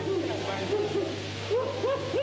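A person making wordless hooting vocal noises: a series of short calls that rise and fall in pitch, dipping quieter midway and then starting again with higher rising calls near the end.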